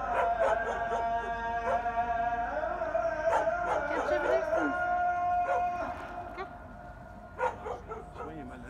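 Dogs barking and yelping with sharp, short calls and bending, howl-like cries, over a sustained musical chord that stops about six seconds in. A single loud bark comes near the end.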